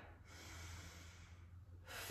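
Faint breathing: a soft, noisy breath through the nose or mouth in the first second or so, over a low steady hum.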